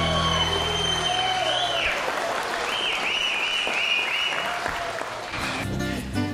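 An audience applauding in a room at the end of a sertanejo song, while the last guitar chord rings out and stops about a second in. High wavering whistles cut through the clapping twice.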